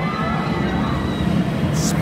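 Shambhala steel roller coaster train running along its track, growing a little louder as it approaches, over the murmur of the park crowd. A short hiss comes near the end.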